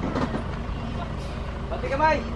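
Dump truck's engine idling steadily with an even low throb.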